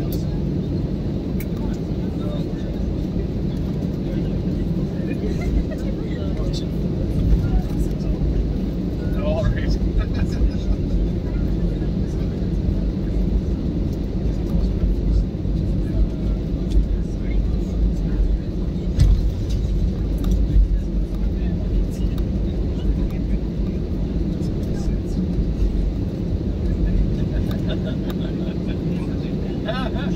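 Airliner cabin noise during taxi: a steady low rumble from the jet engines at taxi power and the aircraft rolling along the taxiway.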